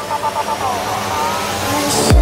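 House music breakdown with the kick drum dropped out: synth tones slide up and down in pitch while a rising noise sweep builds toward the end, just before the beat comes back in.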